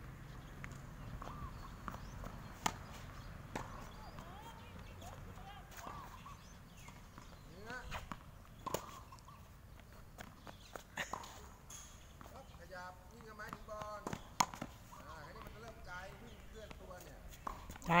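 Tennis balls struck by rackets and bouncing on a hard court: sharp pops every few seconds, the loudest a little past halfway, with faint voices in between.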